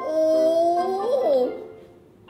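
A woman's drawn-out wordless 'oooh', rising slowly in pitch and then wavering and dipping before it fades, like a whine.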